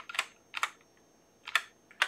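A few separate computer keyboard key presses, sharp clicks spaced about half a second to a second apart.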